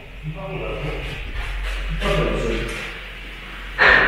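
Quiet, indistinct talking in a hall with some echo, then one sharp knock near the end.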